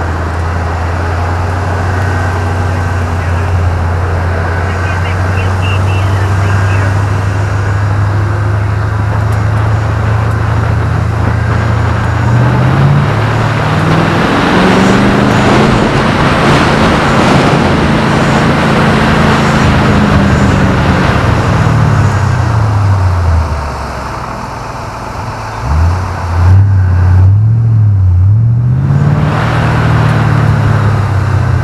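Car engine heard from inside the cabin on an autocross course: it runs steadily at first, then revs climb and hold high through the middle. Near the end the revs drop away with a brief dip in loudness, then rise and fall quickly a few times as the car is driven through the cones.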